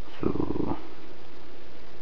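A brief, rough, pulsing voice-like sound, a low throaty murmur or purr, about a quarter second in, lasting about half a second, over a steady background hiss.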